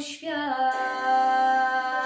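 A young girl singing solo. After a short syllable she holds one long, steady note from about half a second in.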